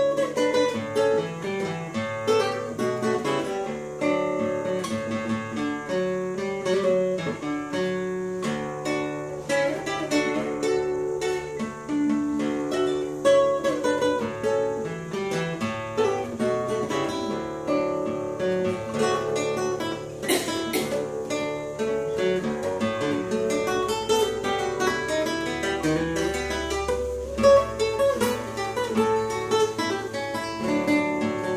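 Nylon-string classical guitar played fingerstyle: a picked melody over bass notes, with one sharp accent about twenty seconds in.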